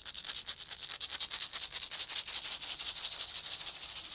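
A single maraca shaken rapidly and continuously, a dense high rattle that grows louder over the first second, played as a crescendo.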